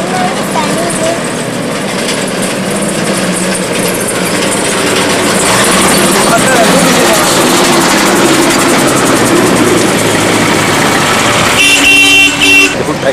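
Steady road traffic noise mixed with indistinct voices. Near the end a vehicle horn sounds a few short toots.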